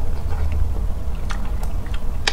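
Close-miked chewing of a mouthful of rice and stir-fry, with a few sharp wet mouth clicks in the second half, over a steady low rumble.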